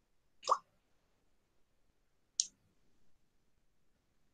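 Two short clicks about two seconds apart, the first fuller and lower than the second, over faint room noise.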